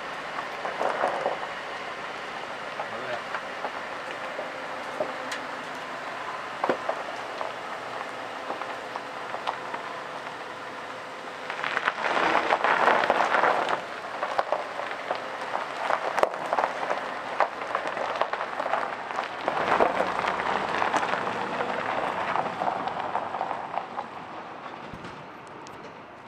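Gravel crunching and crackling under a pickup truck's tyres as it moves over a gravel driveway. The crackle swells twice, for a couple of seconds about halfway through and for several seconds near the end.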